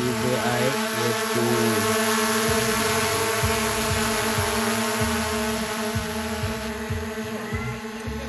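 DJI quadcopter drone hovering just above the ground, its propellers giving a steady buzzing hum. It grows slightly quieter in the last couple of seconds as the drone moves off.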